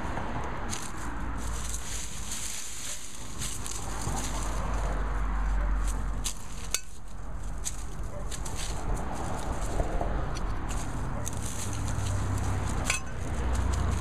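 Scattered crackles and clicks of dry stalks, leaves and soil being handled as dead Jerusalem artichoke plants are pulled up and their tubers picked out by hand, over a steady low rumble.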